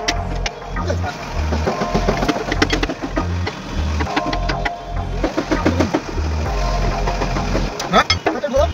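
Background music: a song with vocals over a heavy, repeating bass beat.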